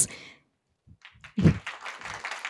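Light, scattered applause from a small audience, heard faintly through the speaker's microphone. It starts about halfway through after a moment of near silence, with a low bump on the mic soon after.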